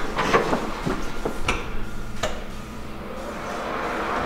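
A wooden panel door being opened and handled: several sharp knocks and clicks in the first two seconds or so, echoing in an empty room, then quieter.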